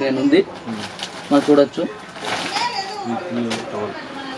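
Voices in a shop: short snatches of speech, then quieter talk with a brief high, wavering voice-like call about two seconds in.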